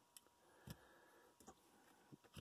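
Near silence with three faint clicks as baseball cards are handled and set down on the table, the loudest a little under a second in.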